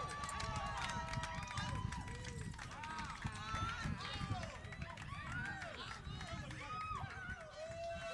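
Small audience applauding and cheering after a song, many hands clapping under overlapping whoops and voices.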